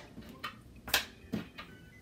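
Pennies set down one at a time on a paper ten frame on a wooden tabletop: a few soft clicks about half a second apart.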